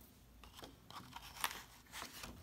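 Faint crisp rustles of a paper picture-book page being handled and turned, a few short ones with the clearest in the second half.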